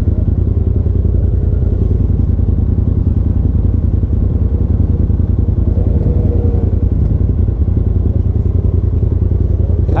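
Polaris RZR side-by-side's engine idling steadily at about 1,300 rpm, heard from inside the cab as an even, rapid low pulsing.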